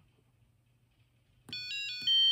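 Piezo buzzer on a breadboard reaction-game circuit. Near silence at first, then a click about one and a half seconds in, followed by a quick run of short electronic beeps stepping between pitches.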